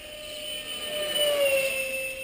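A 64 mm electric ducted fan on an RC F-18 jet whines as the plane flies past. It grows louder, and its pitch drops slightly about midway.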